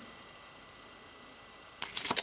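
Quiet room tone, then near the end a short papery scrape as a printed cardboard slipcover is slid off a hardbound Blu-ray mediabook case.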